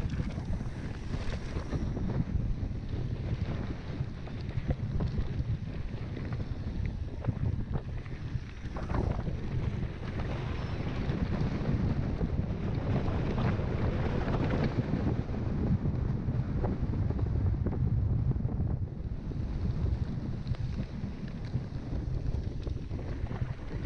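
Wind buffeting a GoPro action camera's microphone on a mountain bike ridden fast downhill, a steady low rumble, mixed with the tyres rolling over a grass and chalk track and frequent small rattles and knocks from the bike over bumps.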